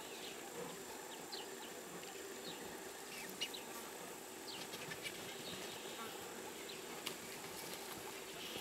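Quiet bush ambience: a steady high insect drone with repeated short, falling bird chirps, and two brief sharp clicks.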